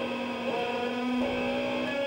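Live band holding long droning notes on distorted electric guitar and bass, the pitch stepping to a new note about every half second.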